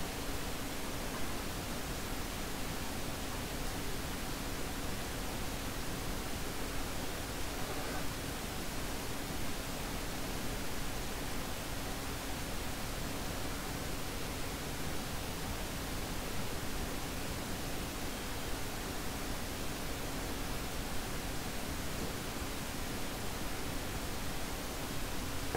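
Steady hiss of background noise, with a faint steady hum underneath.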